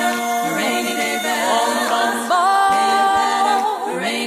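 Female a cappella doo-wop group singing held close-harmony chords with no instruments, sliding into a new, louder chord a little past halfway.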